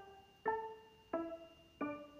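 Background music: a piano-like keyboard playing single notes about every two-thirds of a second, each one struck and then dying away.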